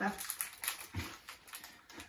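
Plastic snack wrappers crinkling and crackling as they are handled and torn open by hand, a quick irregular run of crisp crackles. A brief voice sound comes about halfway through.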